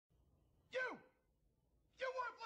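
A single short vocal exclamation, like a gasp or sigh, falling steeply in pitch and lasting about a quarter second, heard about three quarters of a second in.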